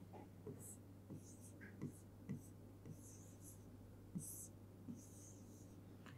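Faint scratching and tapping of a pen writing on an interactive touchscreen whiteboard, in about ten short strokes, over a low steady hum.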